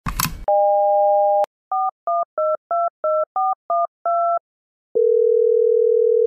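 Telephone call being placed: a brief rustle, then a steady dial tone cut off by a click. Eight touch-tone digits are dialed in quick succession, then a single ringing tone of about a second and a half begins near the end.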